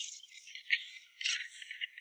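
Hands mixing and kneading damp, crumbly fish bait in a clear plastic basin: a faint, irregular scratchy rustle of the bait against the plastic, with a few louder scrapes.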